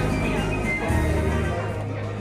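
Background music playing, with a low bass line that changes notes.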